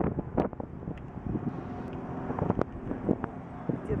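A steady low engine drone, joining about a second and a half in, under wind rumbling on the microphone, with a few short knocks.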